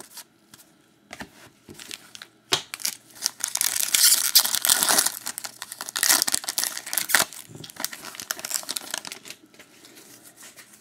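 Trading-card pack wrapper being torn open and crinkled in the hands, a dense crackling for several seconds in the middle. It is preceded by light clicks and flicks of cards being handled.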